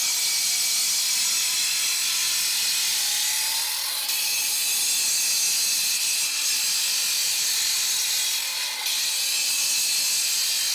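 Evolution disc cutter's diamond blade grinding through a concrete block, a steady hissing cut that dips briefly about four seconds in and again near the end.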